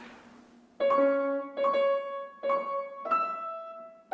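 Steinway grand piano played one note at a time, picking out the harp part's soprano line that centres on D flat: the same note struck three times, then one a step higher, each left to ring.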